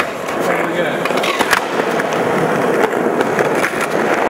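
Skateboard on a concrete floor: a couple of sharp clacks about a second and a half in as the board goes down, then the steady rumble of its wheels rolling as the skater pushes off.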